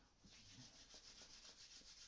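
Near silence, with a faint, fast, even rubbing sound.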